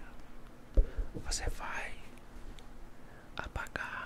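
Close-miked ASMR whispering and breathy mouth sounds, with a sharp thump just under a second in and a cluster of soft clicks near the end.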